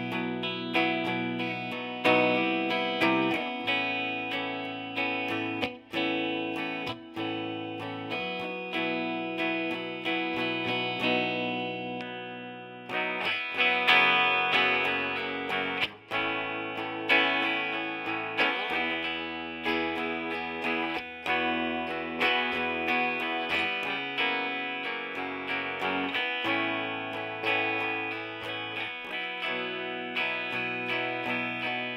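Gibson Les Paul Standard 60s electric guitar played through an amplifier: chords picked and left to ring, changing every second or two, with single picked notes in between.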